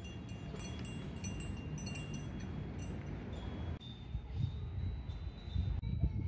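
Small metal chimes tinkling in quick, irregular strikes through the first half, over a steady low outdoor rumble, followed by one held high ringing tone.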